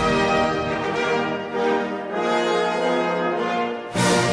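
Instrumental music led by brass playing held chords that change every second or so, with a new loud chord striking right at the end.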